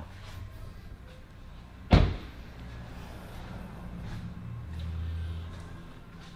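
A car door on a 2014 BMW X3 shut once with a single loud thud about two seconds in, over a low hum.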